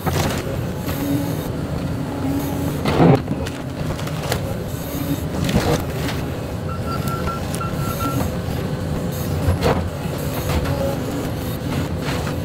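Volvo crawler excavator running steadily while its bucket and thumb gather demolition debris, with a few sharp cracks and thumps of broken lumber being grabbed and dropped.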